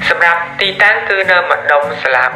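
Speech: a voice talking throughout, over a low steady music bed.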